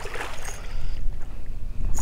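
A hooked red drum splashing and thrashing at the water's surface as it is led to the net, with wind rumbling on the microphone.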